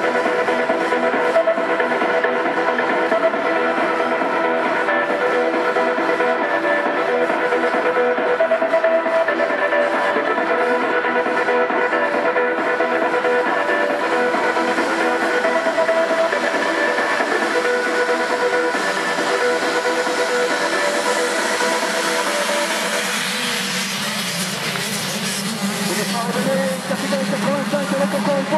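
A full field of motocross bikes held at high revs at the start gate, a dense, steady drone of many engine notes together. About 23 seconds in, the sound changes to rising and falling engine notes as the bikes launch and race away.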